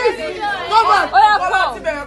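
Several people chattering and talking over one another, their voices overlapping.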